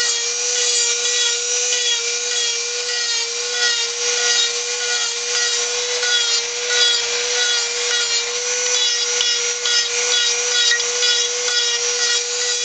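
Handheld rotary tool running at high speed with a steady whine, its carving bit grinding into soft wood with a gritty rasp that rises and falls as it is worked.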